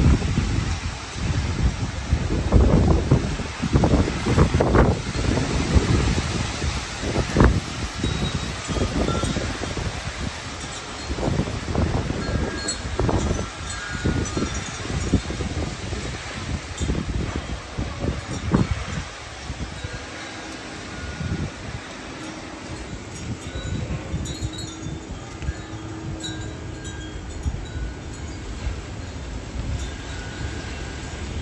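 Wind gusting across the microphone, heaviest for the first twenty seconds and then easing, with wind chimes ringing on and off.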